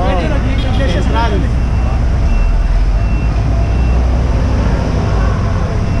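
Steady low rumble of city road traffic, with a bus running close by. A voice talks briefly in the first second.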